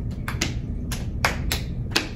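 Hand claps from an adult and small children clapping a beat: about half a dozen sharp claps at uneven spacing, not quite together.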